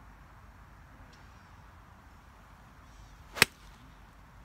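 A golf swing with an iron: a brief rising whoosh of the downswing, then one sharp crack as the clubface strikes the ball off a synthetic hitting mat, about three and a half seconds in.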